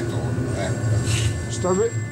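Steady low rumble and hum of a moving Rhaetian Railway train, heard from inside the passenger carriage, with faint voices in the background. A man's voice starts speaking near the end.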